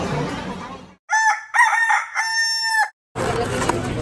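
A rooster crowing cock-a-doodle-doo, two short notes and then one long held note, cut in cleanly as a sound effect from about one second to three seconds in. Before it comes a second of busy crowd chatter in a market hall.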